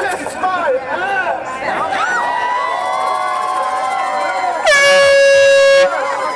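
Crowd of protesters shouting and chanting, with some held, drawn-out calls. About three-quarters of the way through, a single loud, steady horn blast sounds for about a second, louder than the crowd.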